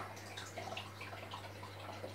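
Faint trickling and dripping of aquarium water over a steady low hum from the tank's running equipment.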